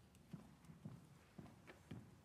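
Faint high-heeled footsteps on a stage floor, walking at a steady pace of about two steps a second.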